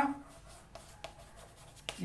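Chalk writing on a chalkboard: faint scratches and light taps as a word is written, with a sharper tap of the chalk near the end.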